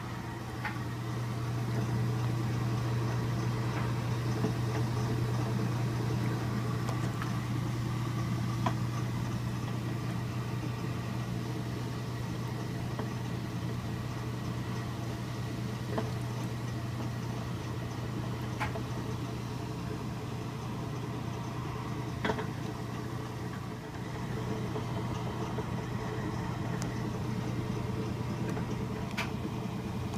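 1966 Philco Flex-A-Wash hula-action washing machine running its wash cycle: a steady motor hum with water and towels sloshing in the tub, and a few faint clicks now and then.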